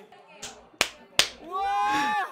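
Two sharp hand claps about half a second apart, a little under a second in, struck during laughter. A voice holding a note comes in near the end.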